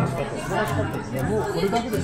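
Several people talking over one another at a restaurant table, indistinct conversational chatter with no single clear voice.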